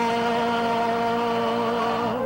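Gospel choir and electronic keyboards holding one long, steady final chord at the close of the song.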